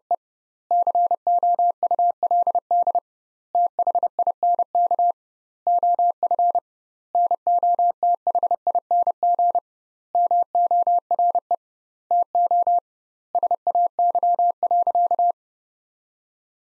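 Morse code sent as a single steady-pitched beep at 30 words per minute, keyed in quick dots and dashes, in about eight word groups with short pauses between them (double word spacing). It spells out a practice sentence, 'She could think of nothing more to say', and stops about a second before the end.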